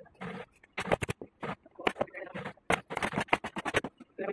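Dark upholstery material being handled and dragged across a sewing-machine table, giving irregular crackles, scrapes and sharp clicks.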